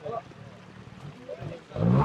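Trials motorcycle engine revved in a sharp burst near the end as the bike climbs through a rocky streambed, over faint background chatter.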